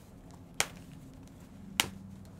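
Two sharp clicks about a second apart as packaging is handled and worked open, over a faint steady low hum.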